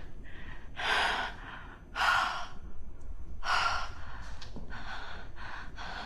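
A person breathing heavily in gasps: three deep, loud breaths about a second or so apart, then quicker, shallower ones.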